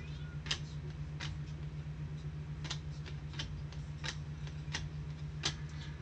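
Donruss Optic trading cards being slid one by one off a stack by gloved hands, each card leaving a short crisp click, about seven in all. A steady low electrical hum runs underneath.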